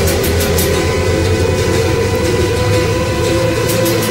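Loud rock music: a full band playing an instrumental passage between sung verses, with a note wailing up and down over it in the second half.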